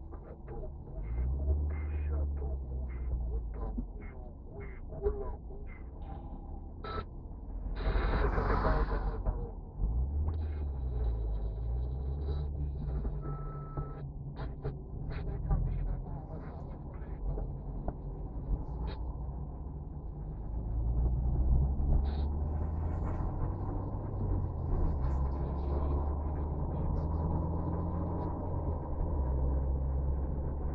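Car engine and road rumble heard from inside the cabin, with a regular ticking about twice a second for the first several seconds. There is a brief louder burst of noise about eight seconds in. The engine note rises and grows louder about two-thirds of the way through as the car pulls away.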